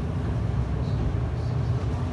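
A steady low rumble of background noise with no distinct event in it.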